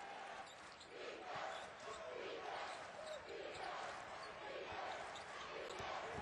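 Arena crowd noise at a college basketball game, with a basketball bouncing on the hardwood court.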